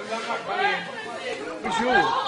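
Indistinct chatter of several people's voices talking and calling over one another.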